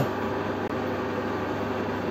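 Wilson metal lathe running steadily at its slowest spindle speed, geared for screwcutting, an even mechanical hum from its motor and gearing while the half-nut lever on the apron is engaged.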